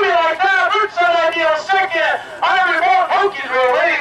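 A man's voice talking rapidly and continuously, the track announcer calling the harness race down the stretch.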